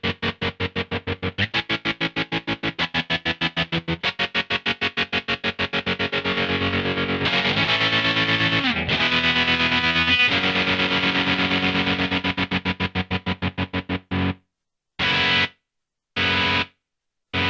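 Electric guitar played through a MadeByMike Saltshaker tremolo pedal, its volume chopped into rapid even pulses. As the rate is swept, the pulsing speeds up until it nearly blurs into a steady tone around the middle. It then slows down to slow, hard on-off chops about a second apart near the end.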